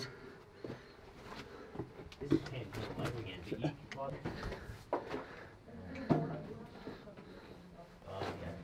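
Quiet scuffing and crunching footsteps on loose rock and rubble, with scattered short knocks and scrapes, under faint low voices.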